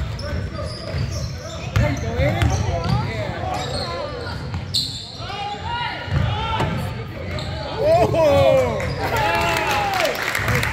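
Basketball dribbled on a hardwood gym court, with repeated low bounces, while players and spectators call and shout, their voices echoing in the hall. One voice calls out loudest about eight seconds in.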